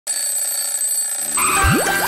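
Opening jingle of an animated TV station ident: a high, steady ringing tone, then just past one second a fuller chord comes in with a quick rising sweep leading into the music.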